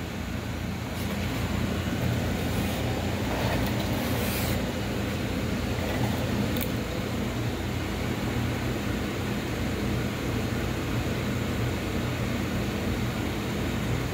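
Steady low mechanical hum with a faint hiss from running equipment, with a few faint clicks.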